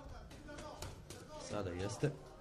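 A few sharp smacks of boxing gloves landing as two boxers exchange punches, against voices calling out in a large hall, one voice loudest near the end.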